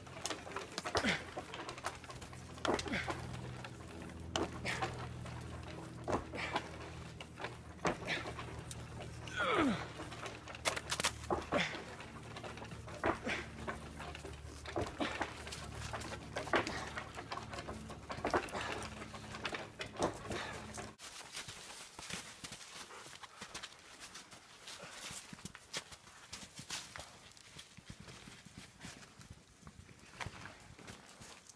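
A standing dead aspen being rocked back and forth by hand: sharp crunches and creaks come roughly once a second. A low steady hum underneath stops suddenly about two-thirds of the way through.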